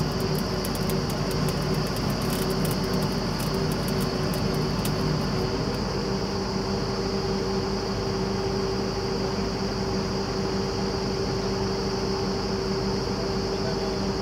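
Truck-mounted borewell drilling rig and its air compressor running with a steady mechanical drone and a constant hum. A faint, fast ticking sits on top for the first five seconds or so, then stops.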